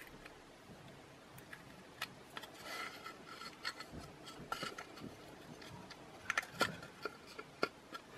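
Faint handling sounds of small hand tools: light clicks and taps of tweezers and scissors against a tiny metal hinge and a thin wooden lid, with a brief rustle and a few sharper clicks near the end.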